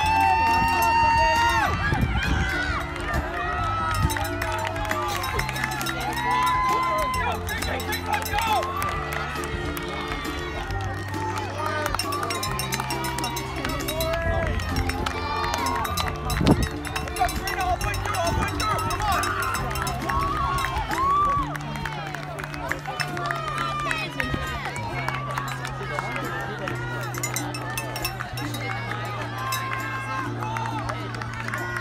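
Background music with low held chords that change every second or two, over a crowd of spectators calling out and chattering. A single sharp knock about halfway through.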